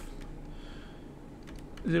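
Faint taps and scratches of a stylus writing on a tablet screen, over a steady low hum; a man's voice comes in near the end.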